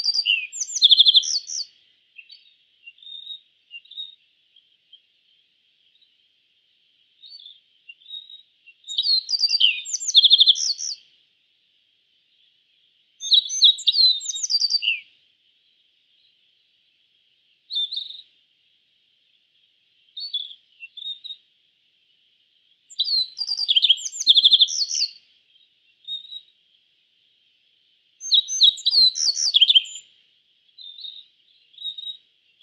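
Yellow-breasted bunting (Emberiza aureola) singing: short phrases of quick, high, clear notes, repeated every few seconds, with brief single notes in the gaps, over a faint steady background hiss.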